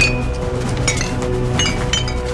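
Glass bottles with cloth wicks stuffed in their necks clinking against each other as they are handled in a plastic crate: a few sharp clinks, one at the start, one about a second in and two near the end. Background music plays throughout and carries most of the sound.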